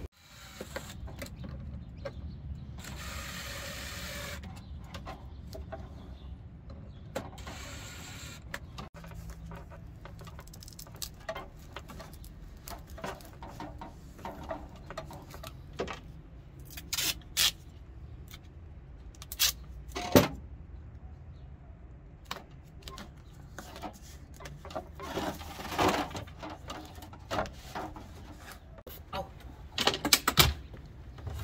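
Hands-on fitting work on a parking heater's flexible air duct: scattered clicks, knocks and rustles of handling the hose, clamp and tape, with two short bursts of noise a few seconds in, over a steady low hum.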